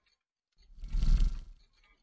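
Whoosh sound effect for an animated logo intro, swelling with a deep rumble from about half a second in and fading out by about a second and a half.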